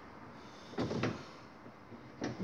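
Brief mechanical rattle and scrape from a mini buggy's kart-style steering linkage being turned, a short double knock a little under a second in, against low room tone.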